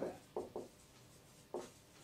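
Marker writing on a whiteboard: a few short strokes, two close together about half a second in and another at about one and a half seconds.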